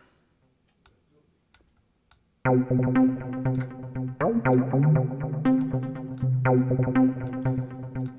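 A few faint clicks over near silence, then about two and a half seconds in an Omnisphere arpeggiator sequence starts. It is a repeating, bass-heavy synth pattern with pitch slides that loops about every four seconds, its swing modulated by an LFO.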